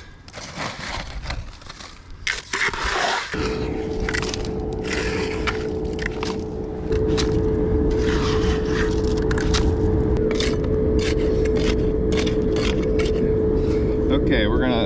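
Trowel scraping and slopping runny concrete mix in a plastic bucket. From about three seconds in, a steady machine hum with a constant pitch sets in and gets louder about halfway through. Scrapes and clicks from handling the wet mix continue over it.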